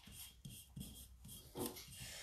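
Faint rubbing and rustling of hands pressing and smoothing glue-soaked paper onto a bottle, with a brief murmur of a voice near the end.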